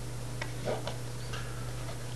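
Pen stylus tapping and sliding on a writing tablet, a few light ticks over a steady low hum.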